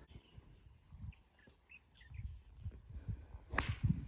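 A golf club striking a ball off the tee about three and a half seconds in: one sharp crack, the loudest sound here. Before it, a few faint short bird chirps.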